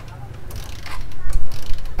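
Motorcycle kick-starter being kicked, its ratchet clicking as the engine turns over, getting louder in the second second. The bike is being cranked to test the armature coil's output to the headlight.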